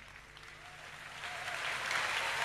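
Congregation applauding, the clapping swelling steadily louder.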